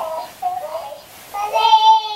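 A young child singing and vocalising in a high voice, heard through a baby monitor's speaker. There are short rising-and-falling notes at first, then a long held note starting about one and a half seconds in.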